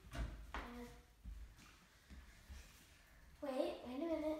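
Mostly quiet room with a few faint knocks and low thumps in the first second or so, then a short bit of voice near the end.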